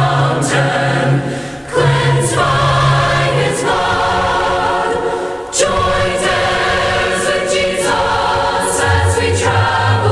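Choir singing a hymn a cappella in several parts, with held chords and two short breaks between phrases.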